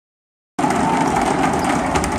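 Basketball game sound in a gym, starting abruptly about half a second in: a steady hubbub with a high sneaker squeak and a few sharp knocks of a bouncing ball.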